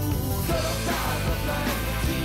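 Loud rock band music playing with a driving, steady beat.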